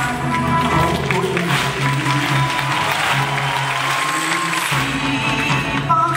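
Live band playing an instrumental passage between a singer's lines, with held notes over a steady bass line.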